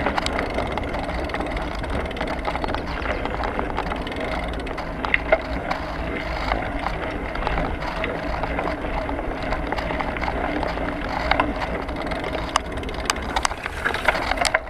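Bicycle ridden over a rough tarmac path, picked up by a handlebar-mounted action camera: a steady tyre rumble with frequent small clicks and rattles from the bike.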